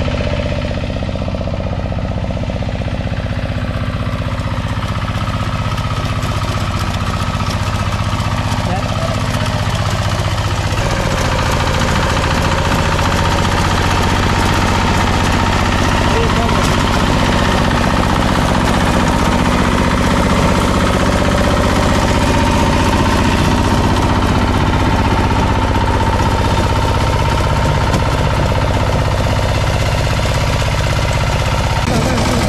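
Walk-behind power tiller's engine running steadily under load while ploughing dry soil, its note shifting slightly about eleven seconds in.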